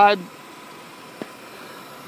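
Steady faint outdoor background noise, with one short click about a second in.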